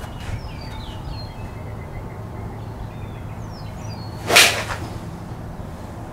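A golf iron striking a ball off a hitting mat: one sharp, loud crack about four seconds in.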